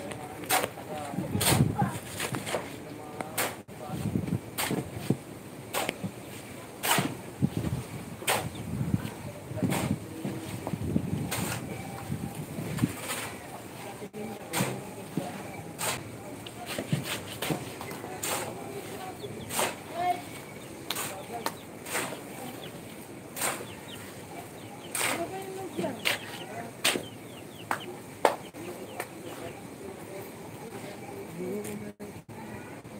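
Irregular sharp knocks and taps of masonry work on a concrete hollow-block wall, several a second at times, with people talking, mostly in the first half.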